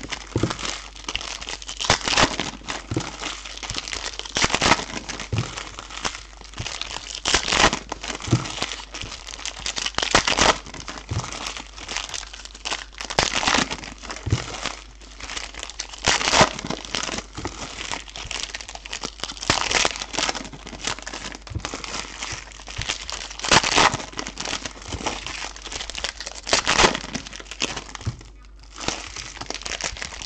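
Foil trading-card pack wrappers being torn open and crumpled by hand: irregular bursts of crinkling and ripping foil, with a short lull near the end.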